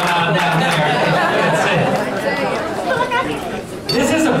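Crowd chatter: many people talking at once, the voices overlapping and indistinct, dipping briefly near the end.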